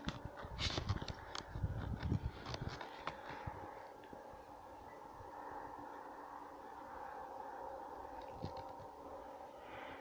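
Footsteps and brush rustling for the first three seconds or so while walking through bushes, then a quiet outdoor stillness with a faint steady hum.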